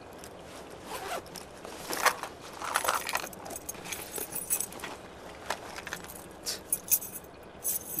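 Zipper of a fabric shoulder bag being pulled open in a few scratchy strokes about two to three seconds in, followed by rustling and small clicks as hands search inside the bag.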